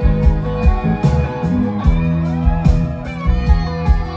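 Live rock band playing an instrumental passage: drums on a steady beat under bass, electric guitar and saxophone, with bending lead lines on top.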